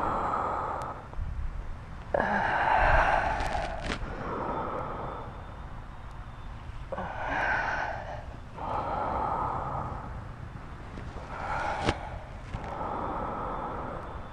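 A woman breathing audibly in slow, deliberate inhales and exhales, about six breaths, each a second or two of breathy hiss with short quiet gaps between.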